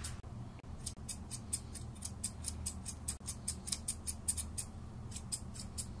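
Grooming shears snipping a standard poodle's topknot hair: quick, regular crisp snips, about four a second, starting about a second in, over a low steady hum.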